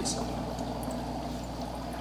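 Air bubbling steadily through water from a bubbler that aerates and circulates phytoplankton cultures, with a low steady hum underneath.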